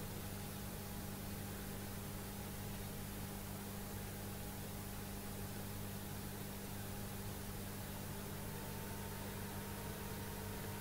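Steady hiss with a low hum under it and a faint thin high tone: the background noise of the room and recorder, with no distinct sound standing out.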